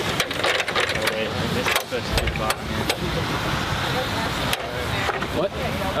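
Background chatter of a group of people talking outdoors over a steady noisy bed, with scattered sharp knocks and clatter throughout.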